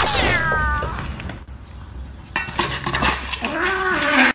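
A cat meows with a falling call at the start. From about two seconds in, a stainless-steel food bowl clatters and rattles on a tiled floor as it tips over, with more cat calls mixed in near the end.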